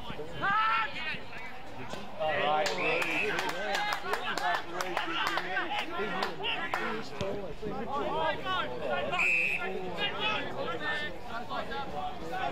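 Several distant voices calling and shouting at once across an open football ground, players and spectators, with a few sharp knocks in the middle and two short high tones.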